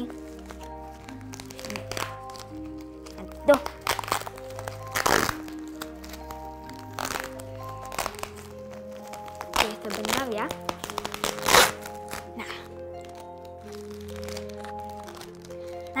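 Background music with slow, sustained notes, under the crinkling and crackling of a bubble-wrapped parcel's plastic and paper as its wrapping is picked at and peeled, with louder crackles a few times.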